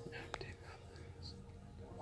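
Faint voice sounds from a preacher's sermon played through a television speaker, with one sharp click about a third of a second in, over a low steady hum.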